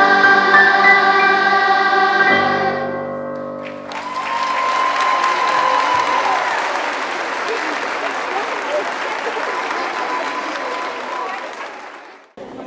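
A children's choir and string orchestra hold a final chord that dies away about three and a half seconds in. Audience applause follows and fades near the end.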